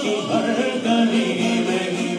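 A man singing a naat unaccompanied into a microphone, drawing out long held notes, with other voices singing along beneath him.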